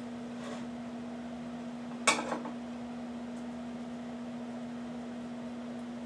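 A serving utensil clinks once against the cookware about two seconds in, over a steady hum.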